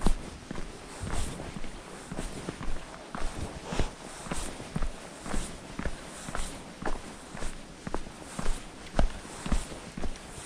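A hiker's footsteps on a dry dirt trail scattered with stones and pine needles, walking at a steady pace of about two steps a second.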